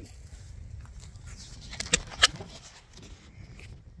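A steady low rumble, as of wind on the microphone, with a few sharp clicks about two seconds in as the phone camera is handled and picked up.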